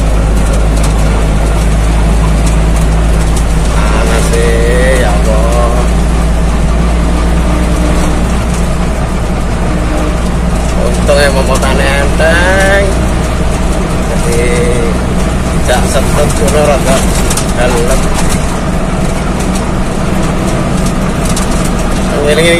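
Steady low drone of a truck's engine and road noise, heard from inside the cab while cruising, with brief indistinct voices now and then.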